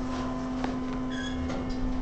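Steady low hum in a hydraulic elevator cab, with a few light clicks as a locked-out floor button is pressed.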